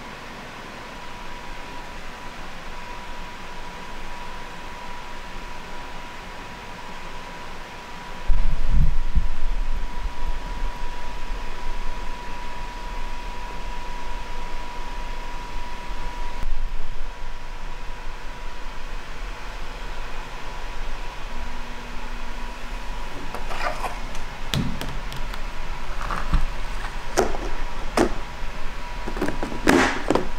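A steady low hum, with a faint high-pitched tone over it through the first half, and a few short clicks and knocks in the last several seconds.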